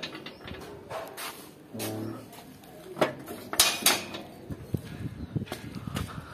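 Metal gate being unlatched and pushed open: the bolt and latch clank, and the gate gives several sharp metallic knocks a few seconds in.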